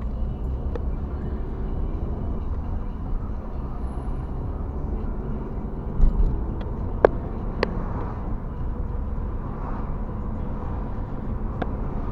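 Steady low road and engine rumble of a car driving, heard from inside the cabin. A low thump comes about halfway through, and a few sharp clicks follow later on.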